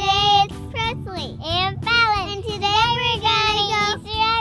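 A young girl's high voice singing, with held notes and some sliding pitch.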